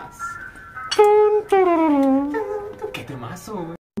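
A voice holding a note and then sliding down in pitch, with music behind it. The sound cuts out completely for a moment just before the end.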